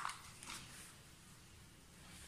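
Faint handling sounds of a plastic residual-current circuit breaker being turned in the hands while a wire and screwdriver are worked at its terminals: a light click at the start and a soft rustle about half a second in, otherwise quiet.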